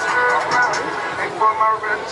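Several people talking over one another in a crowd, with music playing.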